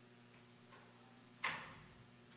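Quiet room tone with a faint steady hum. A faint tap comes a little before one sharp knock about one and a half seconds in, which rings briefly as it fades.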